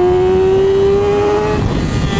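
Yamaha YZF-R6's 599 cc four-cylinder engine pulling under steady throttle while riding, its note climbing slowly in pitch. It briefly drops away near the end. Wind rush is heard under it.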